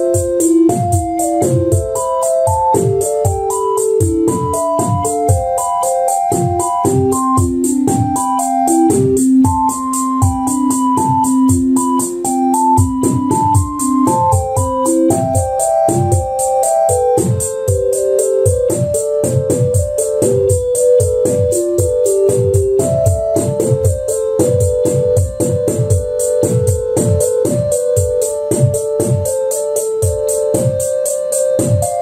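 Eurorack modular synth sequence generated at random by a Mutable Instruments Marbles: a keyboard-like synth melody over an analog kick and snare, with a rapid, even high ticking. The Marbles is set for complete randomness with the note spread turned up. The notes jump widely at first and settle into a narrower range about halfway through.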